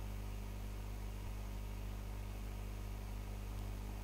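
Steady low electrical hum with even background hiss: the recording's noise floor, with no other sound.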